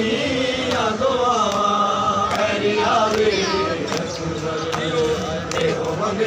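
Men chanting a noha in unison, with sharp hand slaps of matam chest-beating landing at intervals through the chant.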